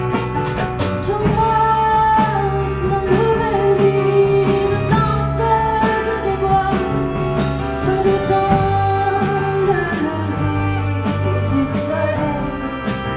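A small live band plays an instrumental passage. Violin and clarinet carry held melody notes over keyboard, bass and drum kit, with cymbal crashes about three and five seconds in and again near the end.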